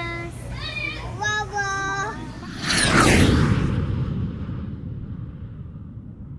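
A young child's high, sing-song voice for about two seconds, then a loud whoosh with a falling sweep that trails off into a long, fading rumble, the sound of a video intro transition.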